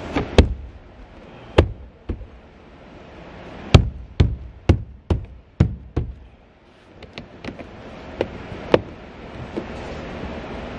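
Plastic interior trim and clips being knocked into place by hand under a car's rear package shelf: about a dozen sharp, irregular knocks and taps, heaviest in the first six seconds, then lighter ticks.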